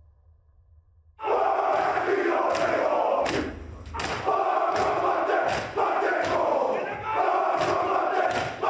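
A group of men chanting a haka in unison, shouting the words in a strong rhythm punctuated by sharp slaps. It starts abruptly about a second in, after a faint low hum.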